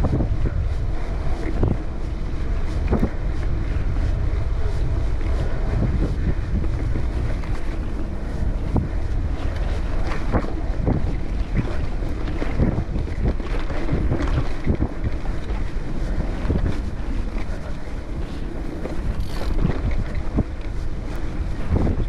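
Wind buffeting the microphone of a Cannondale Topstone gravel bike rider at riding speed. Under it are steady tyre rumble on a dirt trail and frequent short knocks and rattles from the bike over bumps.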